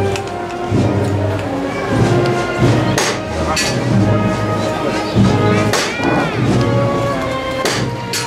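Band music, a slow Holy Week processional march with sustained brass and drums, broken by a few sharp strikes.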